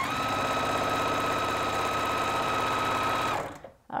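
Juki TL-2010Q straight-stitch sewing machine running steadily as it stitches a seam joining fabric strips, then stopping about three and a half seconds in.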